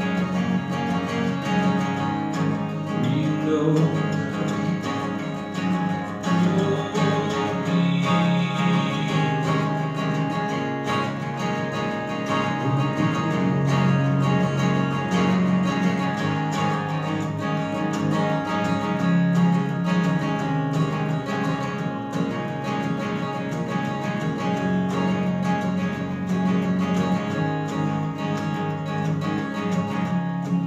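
Acoustic guitar strummed steadily and continuously: an instrumental stretch of a solo song between sung verses.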